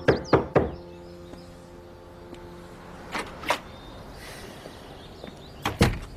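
Knuckles knocking on a front door in pairs: two knocks at the start, two fainter ones about three seconds in, and two louder ones near the end.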